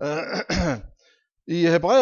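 A man clears his throat once, then starts speaking again.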